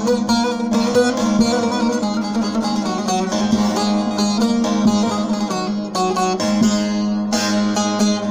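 Bağlama (Turkish long-necked saz) played solo: a run of quick plucked melody notes over a steady droning low note, an instrumental passage between sung lines.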